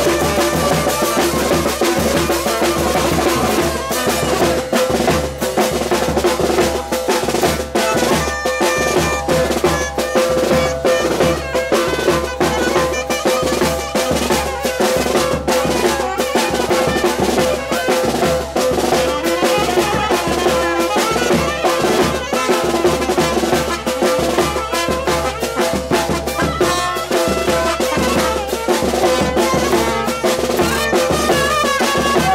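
Live band dance music: saxophone and trumpet playing over a steady drum beat.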